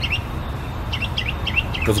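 Small birds chirping: several short, high chirps scattered through a pause, over a steady low background hum.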